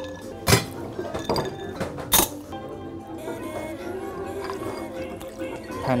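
Background music, with two sharp clinks about half a second and about two seconds in, from a bar spoon and ice in a rocks glass as a cocktail is stirred.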